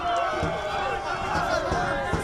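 Men's voices calling out across an outdoor football pitch, one drawn-out call near the start, over low field ambience.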